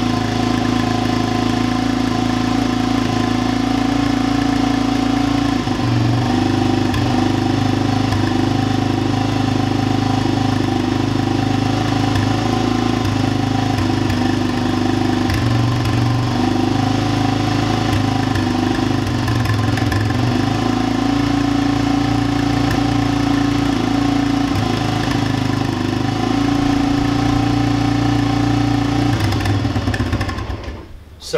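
1992 Honda TRX250X ATV's single-cylinder engine idling steadily after a cold kick-start on choke, its first run in six months. Its speed shifts slightly a few times.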